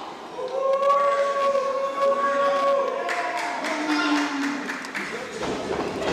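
A long shout held on one steady pitch for about two seconds, then a shorter, lower call, over the steady noise of the arena crowd.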